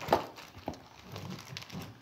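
Plastic wrapping crinkling as hands work open a bundle of coins, with two sharp clicks in the first second, the first the loudest.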